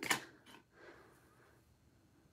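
Faint soft tap and light rustle of a clear acrylic stamp block being set down and pressed onto a cardstock strip, about half a second to a second in.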